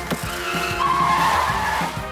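Cartoon sound effects over background music: a sharp hit just after the start, then a rushing whoosh with a skidding squeal that swells in the middle and fades near the end.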